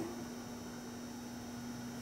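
Room tone: a steady electrical hum with an even hiss, and no other event.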